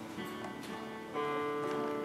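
Acoustic guitar playing the opening chords of a slow folk song, the notes left to ring, with a new chord struck about a second in.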